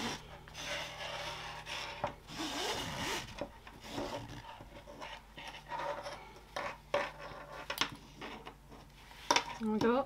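A webbing strap is pulled through the slots of a plastic side release buckle, making a rubbing, rasping slide. The longest pull comes in the first two seconds and shorter pulls follow. Light clicks and taps come later as the buckle is handled.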